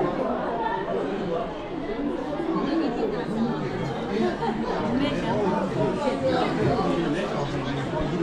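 Steady hubbub of many people talking at once in a crowded restaurant dining hall, with the voices blending into an indistinct chatter.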